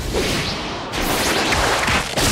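Anime fight sound effects: a dense run of fast whooshes and swishes with low hits underneath, breaking off briefly about a second in and then carrying on.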